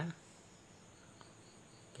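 Faint, steady high-pitched trilling of crickets, with one faint tick a little past the middle.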